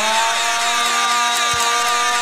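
A steady, buzzing drone of several held pitches at once, over crowd noise from a rap-battle event playing back.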